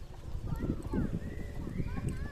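Outdoor rumble and knocks on a phone microphone, with short high gliding calls and a voice from about half a second in.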